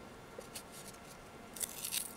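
Faint rustle and crackle of masking tape being unrolled and wound around a cork in a plastic bottle's neck, a little louder near the end.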